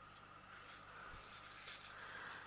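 Near silence: faint room tone, with a few faint ticks of loose resin diamond-painting drills shifting in a plastic tray as it is tilted.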